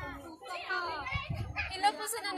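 Women's voices, high and excited, chattering while they pose and dance.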